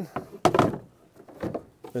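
A framed kayak seat set down onto its base on the plastic hull: one knock about half a second in, then a couple of lighter clicks.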